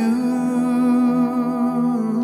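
A man's voice singing one long held 'oo' note of a slow worship song, with a slight vibrato.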